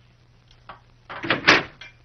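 A door being opened, a short loud noise a little past halfway, among a few light clinks of plates being laid on a table.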